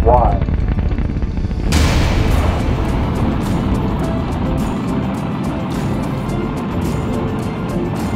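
H-IIB rocket lifting off: a sudden loud blast of engine noise as its main engines and solid rocket boosters ignite nearly two seconds in, then steady engine noise with crackling that slowly eases as it climbs.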